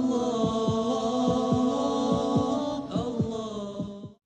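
Background music: held, chant-like vocal tones over a regular beat of short low thumps, about three a second, fading out near the end.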